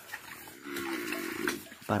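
A cow's short, low grunt lasting about a second, quieter than the surrounding talk.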